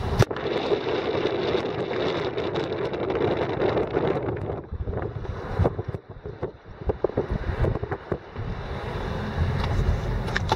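Wind buffeting a phone microphone held at an open car window while the car drives slowly, over the car's running noise. It is a rough steady rumble, with sharper crackles of gusts in the second half.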